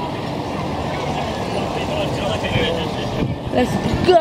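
Steady outdoor street noise with faint, indistinct voices in it.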